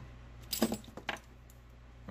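Light metallic clinks and jingling from orthodontic retainer wire being handled: a quick cluster about half a second in, then two or three fainter clicks around the middle.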